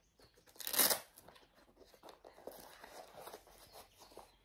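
Packaging crinkling as it is handled, with one loud sharp crinkle a little under a second in, followed by softer intermittent rustling.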